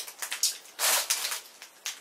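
Soft brushing and rustling as makeup brushes are handled, with a few short swishes, the loudest about a second in.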